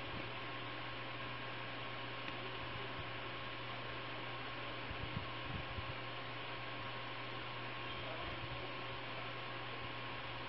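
Steady low electrical hum with hiss and a faint steady higher tone: background noise of the recording, with a few faint ticks about halfway through.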